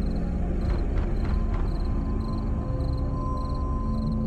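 Eerie droning horror score of held tones, with a high chirp repeating about twice a second and four quick knocks about a second in.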